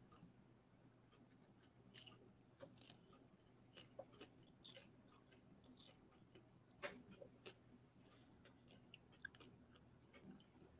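Near silence: faint room tone with a low hum and scattered, irregular small clicks, the loudest nearly five seconds in.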